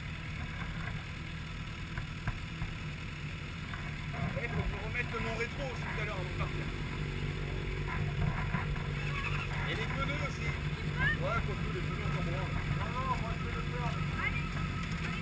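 Kawasaki Z750 inline-four and nearby sport bikes idling steadily in a low hum. Faint voices talk from about four seconds in.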